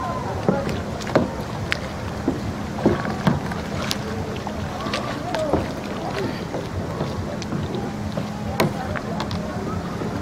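Small plastic kayak being paddled: the paddle blades dip and splash in shallow water, with irregular sharp splashes and drips over a steady water-and-wind noise on the microphone.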